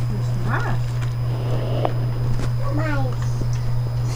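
A steady low hum, with a few short wordless voice sounds that slide up and down in pitch and a faint click.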